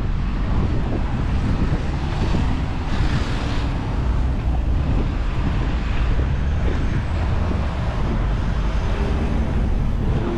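Wind rumbling on the microphone, a steady low buffeting over outdoor street ambience.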